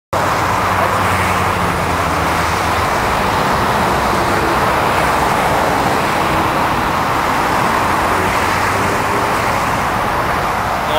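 Steady traffic noise from a multi-lane highway, with a low engine hum from nearby stopped cars in the first few seconds.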